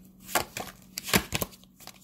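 Tarot cards being handled and shuffled: several short, sharp card snaps and slaps, the loudest a little past halfway.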